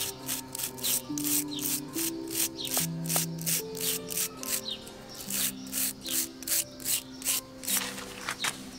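A small stiff brush scrubbing the rough bark of a pine bonsai's trunk in quick back-and-forth strokes, about three a second. Background music plays underneath.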